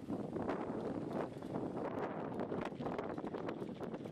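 Wind buffeting the camera microphone: an uneven, gusty rushing noise.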